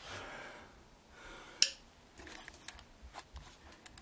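Faint rustling and handling noise with light scattered clicks, and one sharp click about a second and a half in.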